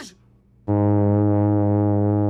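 Sousaphone played loudly at close range: after a short silence, one long, low note starts about two-thirds of a second in and is held steady.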